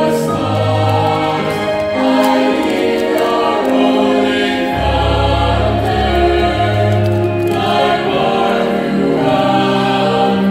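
Mixed youth choir of boys and girls singing a hymn in harmony, with sustained chords held about a second each.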